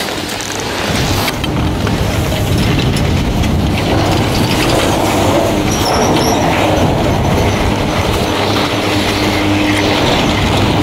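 Detachable high-speed chairlift terminal running: chairs rolling through the station's wheel banks with a steady rumble and clatter.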